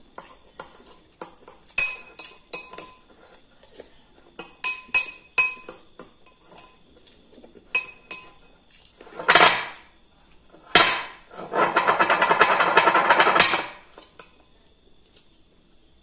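A metal spoon clinking and scraping against a ceramic bowl, a dozen or so ringing clinks over the first eight seconds. Then short slurps, and near the end a longer, louder slurp of about two seconds as the last of the noodle soup is taken from the bowl.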